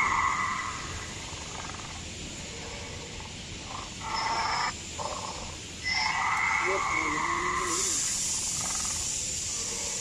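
Animatronic Velociraptor's sound system playing recorded raptor calls: short pitched calls with a wavering growl about four and six seconds in, then a steady hiss from about eight seconds on.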